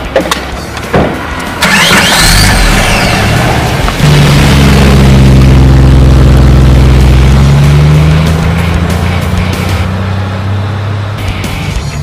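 Mahindra TUV300 SUV's engine running loud and steady as the vehicle pulls away, rising slightly in pitch before fading, with a burst of noise just before it. Background music plays throughout.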